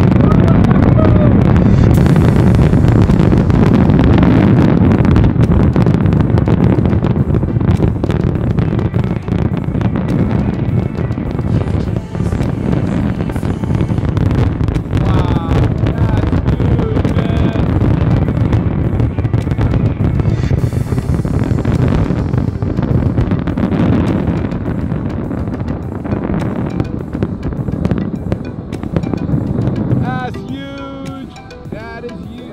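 Grucci fireworks display over water: rapid aerial shell bursts merging into a continuous rumble with sharp cracks, loudest in the first several seconds and easing toward the end. Music plays alongside.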